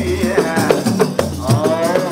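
Large frame drums (duf) beaten in a steady rhythm with a low drone under them in the first half. A sung voice comes in over the drums about one and a half seconds in.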